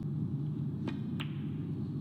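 Snooker break-off: a sharp click of the cue tip on the cue ball, then a second click about a third of a second later as the cue ball strikes the pack of reds, over a steady low hum.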